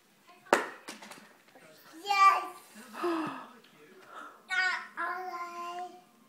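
Toddler babbling in three short, high-pitched vocal bursts without clear words, the last one drawn out. A sharp knock comes about half a second in.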